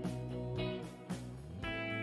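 Instrumental background music with plucked guitar over sustained notes, a note struck about every half second.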